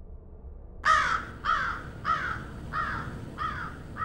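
A crow cawing six times, about two caws a second, starting just under a second in; each caw falls in pitch and the series fades slightly.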